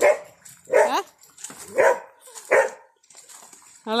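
A dog barking four times in short barks, roughly a second apart.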